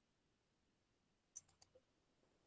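Near silence, then a quick run of four faint clicks about one and a half seconds in, from a computer being worked to start a screen share.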